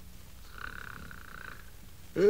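Faint snoring of a sleeping man: one drawn-out, breathy snore starting about half a second in and lasting about a second.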